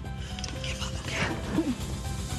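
Background music with steady sustained notes, and about a second in a woman's brief whimpering sob, her voice wavering up and down.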